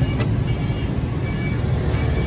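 A 1998 Honda Super Dream's small single-cylinder four-stroke engine idling steadily and very smoothly.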